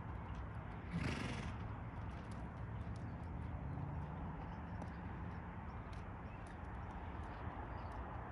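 A horse's hooves falling softly on arena sand at a walk, over a steady outdoor hiss, with a short breathy burst about a second in.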